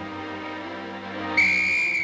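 Orchestral strings of a film score play. Near the end a single high, steady blast on a hand-held signal whistle cuts in over them, lasting a little over half a second.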